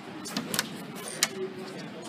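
A metal door knob being turned and tried, giving a few light clicks over low room noise.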